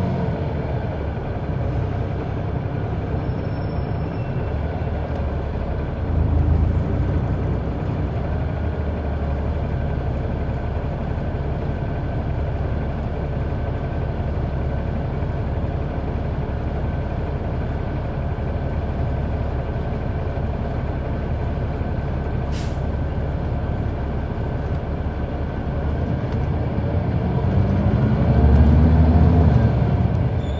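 Caterpillar C-9 ACERT diesel engine of a 2004 Neoplan AN459 articulated bus heard from on board, running steadily under way. The engine note falls away at the start, and near the end it climbs and then drops back. There is a brief hiss of air about two-thirds of the way through.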